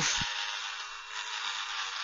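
Dremel Stylus cordless rotary tool running at a low speed setting, its bit grinding into a white plastic model car body as it is worked back and forth: a steady hiss with a faint motor whine underneath.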